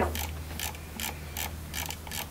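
Irregular light clicks, a few a second, over a steady low hum.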